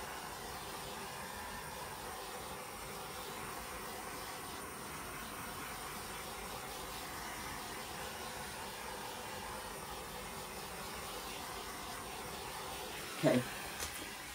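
Small handheld torch running with a steady hiss as its flame is played over wet acrylic pour paint on a canvas.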